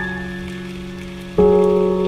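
Slow, soft solo piano music: a held chord fades away, then a new chord is struck about one and a half seconds in, with a faint hiss underneath.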